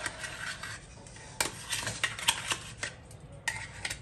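Spoon or spatula scraping and tapping against a glass mixing bowl while cake batter is mixed, with a run of sharp knocks in the second half.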